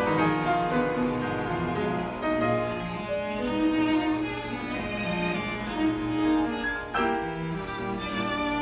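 Live piano trio playing classical chamber music: violin and cello with grand piano, with a fresh entry of notes about seven seconds in.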